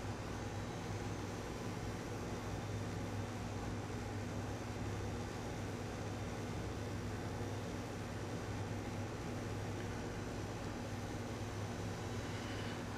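Steady low electrical hum under a faint, even hiss, with no distinct sounds standing out.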